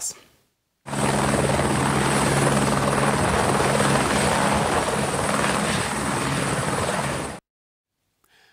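Airbus H125 single-turbine helicopter hovering close by: steady rotor noise with a low drone and a thin high whine. It starts abruptly about a second in and cuts off suddenly near the end.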